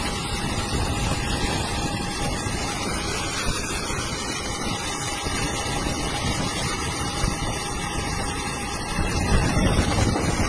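Steady engine and cabin noise heard from inside an airliner, with a thin steady whine running through it.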